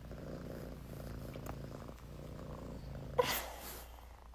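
A domestic cat purring faintly and steadily, which stops a little over three seconds in with a brief, louder sound.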